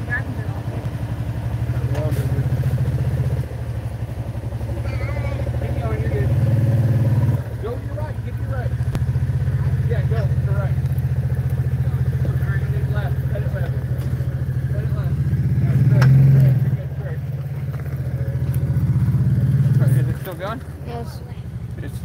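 Side-by-side UTV engine revving up in repeated surges and dropping back between them, loudest about three-quarters of the way through, as the machine tries to drive out of deep mud in four-wheel drive.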